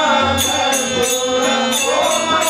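Bhajan devotional singing: a man's voice sings a melodic line into a microphone over steady held instrumental tones. Small brass hand cymbals (taala) are struck in rhythm, about two strokes a second.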